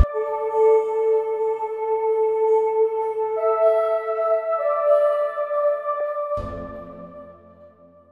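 Soft synth pad from the Spitfire LABS virtual instrument playing alone: long held notes in a slow chord change. A lower chord comes in about six seconds in, then the sound fades away.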